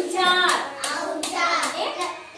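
Young children's voices calling out, with a couple of sharp claps about a second in.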